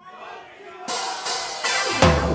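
Live ska band starting its next song: after a near-quiet moment, a rising wash of cymbal and instrument sound builds from about a second in, with a few sharp strikes, leading into the full band coming in at the end.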